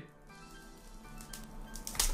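Faint background music with steady sustained notes. A few light clicks come in the second half as the frozen card stack is handled.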